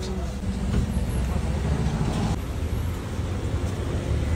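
Steady low rumble of street traffic and outdoor urban background noise, its tone shifting slightly a little past halfway.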